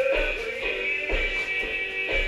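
Music playing from a cassette tape player.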